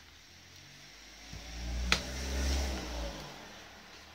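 A motor vehicle's engine passing by, swelling to a peak a little past halfway and then fading away. A single sharp plastic click from the toner cartridge being handled comes about two seconds in.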